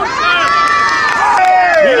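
Spectators cheering and shouting encouragement, with long drawn-out shouts from several voices.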